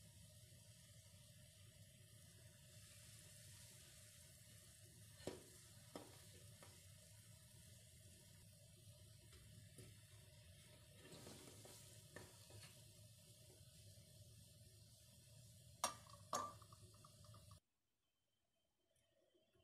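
Faint steady hiss of water boiling in a saucepan on a gas burner, with a few light clinks as eggs in a wire skimmer knock against the pan. The sound cuts off suddenly near the end.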